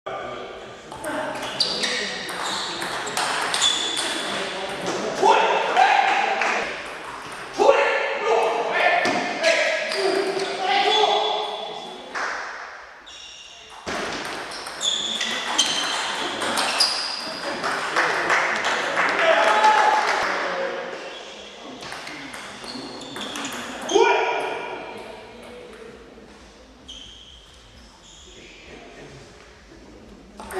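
Table tennis rallies: the ball clicks off bats and table in quick runs of hits, echoing in a large hall, with voices in the background.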